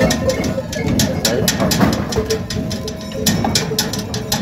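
Bells on a herd of goats clanking in an irregular jangle as the animals jostle, with goats bleating now and then.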